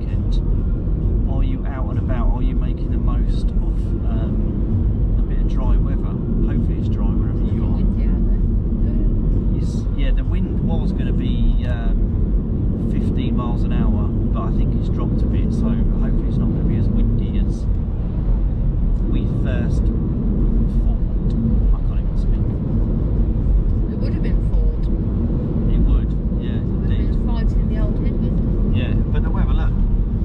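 Road and engine noise heard from inside a moving car's cabin: a loud, steady low rumble. Voices talk over it.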